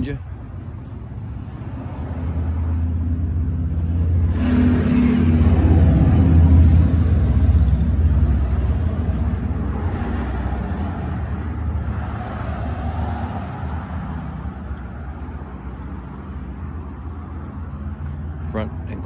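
Freight train rolling past, a low rumble of wheels on rail that swells to its loudest about six seconds in and slowly fades. A pickup truck drives by on the road about ten seconds in.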